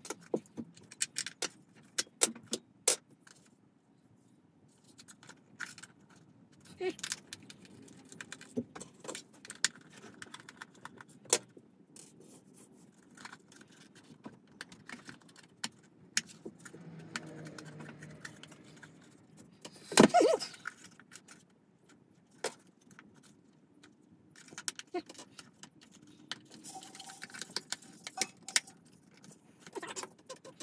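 A plastic battery-powered LED lamp being taken apart by hand on a wooden tabletop: scattered clicks, taps and small rattles of its plastic casing, a small screwdriver and its AAA batteries being handled and set down. One knock about twenty seconds in is louder than the rest.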